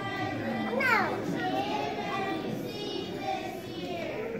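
Many children's voices chattering and calling out together. A high squeal falls steeply in pitch about a second in.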